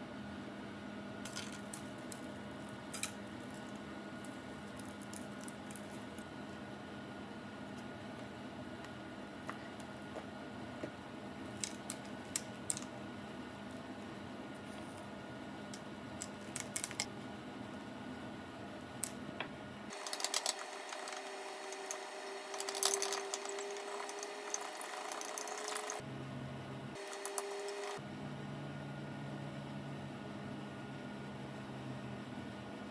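Small clicks and taps from food being handled and dropped into a foil loaf pan, over a steady faint room hum. A faint steady tone comes in for a stretch in the second half.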